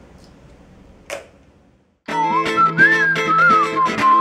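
Faint hiss with a single click about a second in. About halfway through, the song's whistled hook melody starts, gliding up and down over rhythmic electric guitar chords.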